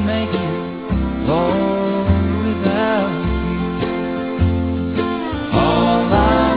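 Gospel song recording: acoustic guitar and band over a steady bass line, with a few gliding melodic notes and no lyrics sung in this stretch.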